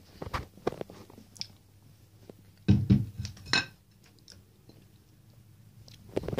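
Clicks, knocks and rustling of a handheld camera being moved and handled, with a loud cluster of knocks about three seconds in, over a faint steady low hum.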